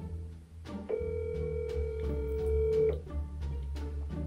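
Telephone ringback tone from a phone: one steady ring about two seconds long, starting about a second in, while the outgoing call waits to be answered. Background music plays underneath.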